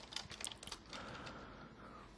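Faint computer keyboard typing: a short run of key clicks, mostly in the first second, then thinning out.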